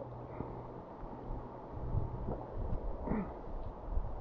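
Wind rumbling on an action camera's microphone over open water, with a brief murmured sound about three seconds in.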